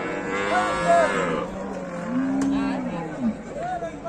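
Several cattle mooing, their calls overlapping. A strong, harmonic-rich moo comes in the first second or so, and a lower, drawn-out one follows from about two to three seconds.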